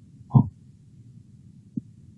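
A pause in a man's speech: a low steady background hum, with one brief low vocal sound from him about a third of a second in and a faint click near the end.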